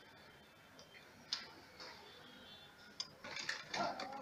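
Quiet clicks and handling noise at a sewing machine as fabric is set under the presser foot: one sharp click about a second in, then a busier run of clicks and rustling near the end.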